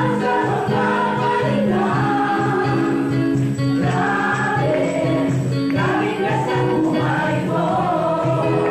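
Gospel choir singing a song together over an accompaniment with a steady beat.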